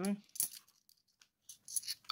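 A few light metallic clicks of £2 coins knocking against each other as they are shuffled through by hand. There is one click about half a second in and a few more near the end.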